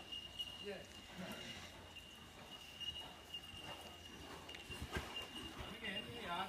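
Horse cantering on soft sand arena footing, its hoofbeats dull and faint, with a few low thuds, the strongest about five seconds in. A steady high tone runs underneath.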